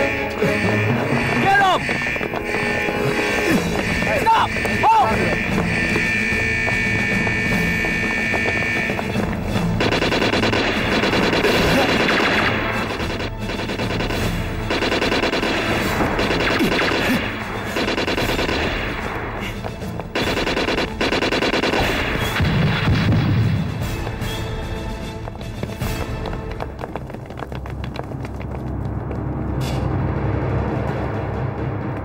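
Staged gunfight sound effects: repeated gunshots, including machine-gun bursts, mixed with a dramatic film score.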